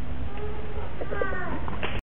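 Low rumble with faint voices; a little after a second in, a high voice slides briefly downward.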